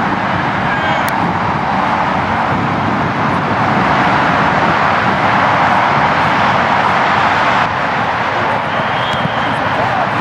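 Steady roar of distant engine noise, swelling a little in the middle and dropping suddenly near the end.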